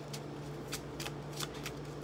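Tarot cards being shuffled by hand off-camera: a run of quick, uneven card snaps, about three a second, over a steady low hum.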